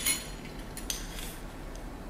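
A few light clinks of a drinking glass and metal utensils being handled on a kitchen counter: a cluster of clinks at the start and one more a little under a second in, then quiet room tone.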